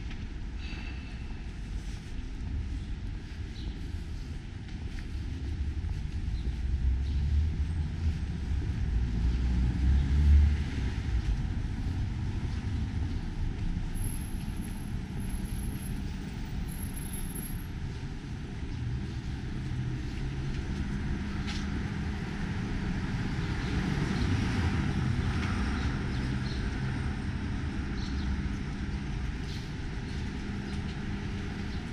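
Low rumble of city street traffic, swelling as a vehicle passes about ten seconds in, then settling to a steady hum.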